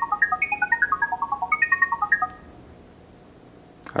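Google OnHub router's speaker playing its setup code as an audio tone: a fast run of short electronic beeps at changing pitches, about ten a second, that stops a little over two seconds in. The tones carry the secret setup code to the phone app.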